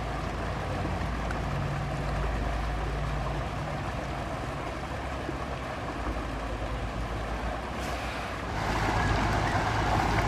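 A steady low engine hum under a constant outdoor background noise, growing a little louder near the end.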